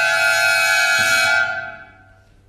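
Violin concerto music: a loud, sustained high note from the solo violin and orchestra, held and then dying away about a second and a half in.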